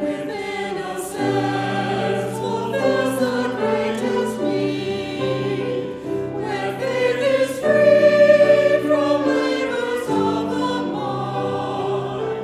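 Small mixed choir of women's and men's voices singing a sacred piece in harmony, with long held notes.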